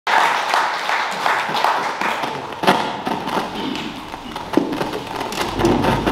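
Audience clapping that thins out and dies away, with a few thumps and a low rumble near the end.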